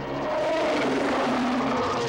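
King Kong's giant-ape roar, a film sound effect: a long, rough roar that starts about a third of a second in and falls in pitch over about a second.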